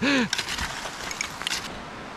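Small metal hand spade scraping and pushing loose soil and dump debris aside, a gritty crunching with small clicks that dies down after about a second and a half. The soil is hard to clear because a tree root has grown through it.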